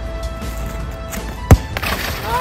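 Background music with a single sharp thud about one and a half seconds in: a foot kicking a football.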